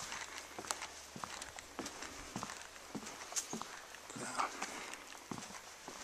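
Footsteps on a wooden plank boardwalk: faint, evenly spaced footfalls, about two a second, as the walker goes along the planks.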